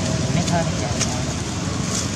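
Steady outdoor background noise like distant traffic, with a faint brief voice or call about half a second in.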